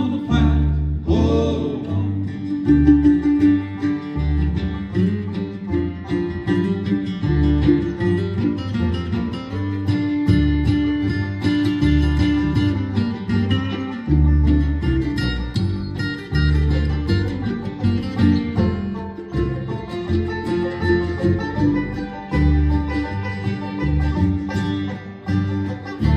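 Bluegrass band playing an instrumental break with fiddle, banjo, mandolin, acoustic guitar and a pulsing upright bass line, with no singing.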